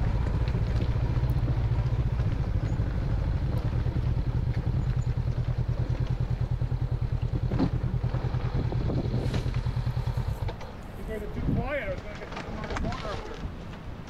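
Dual-sport motorcycle engine running at low revs with an even, pulsing beat, then switched off about ten and a half seconds in. Faint voices follow.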